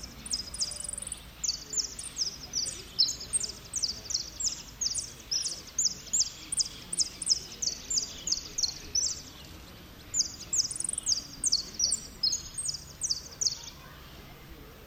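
A jilguero finch singing its repique song: a fast run of short, high chipping notes, about three a second, with a pause of about a second some nine seconds in.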